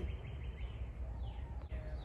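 Outdoor background noise with a low steady rumble and faint bird calls, a few falling chirps about a second in.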